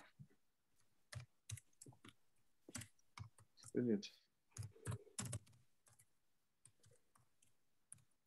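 Computer keyboard typing: faint, irregular key clicks as an email address is typed.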